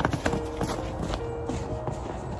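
Boots stepping in snow close by, a few irregular crunching footsteps, over soft background music with held notes.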